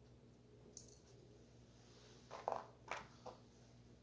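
Quiet room with a faint steady hum, broken by a light click about a second in and three short soft handling sounds a little past halfway, as a small, very thin metal piece is handled between the fingers.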